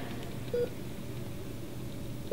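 A single short electronic beep about half a second in, over a steady low hum.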